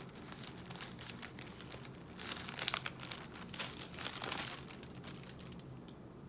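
Paper pages of a book being leafed through and rustled while searching for a passage, with the busiest bursts of rustling about two and four seconds in.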